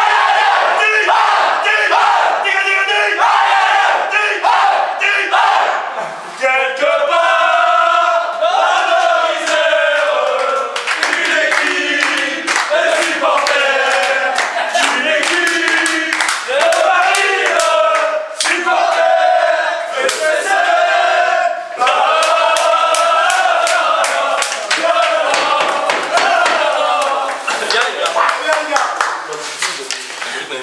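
A group of men shouting and chanting together in a small changing room, with rhythmic hand clapping throughout. About six seconds in, the chanted shouts turn into a sung chant.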